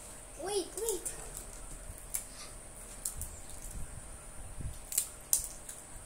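Hard homemade peanut brittle being bitten and chewed, giving a few sharp cracks and crunches spread through, the loudest two close together near the end. A brief hummed voice is heard at the start.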